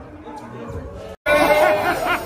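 Chatter of several people's voices talking over one another. The sound drops out suddenly for a moment just after a second in, then comes back louder, with more voices.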